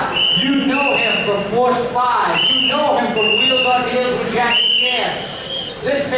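Speech: a man announcing, with several long drawn-out words.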